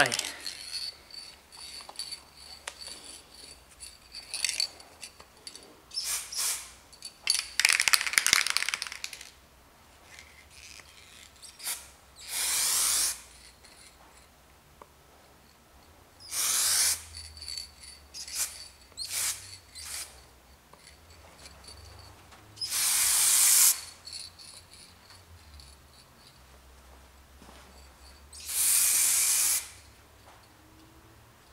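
Aerosol spray can of Spray.Bike metallic-flake clear coat spraying in short hissing bursts. There are several brief hisses in the first third, then four longer bursts of about a second each, with pauses between them.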